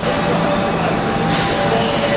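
Steady machinery noise on a steel-tube mill floor: an even rumble and hiss with a few steady hums running through it.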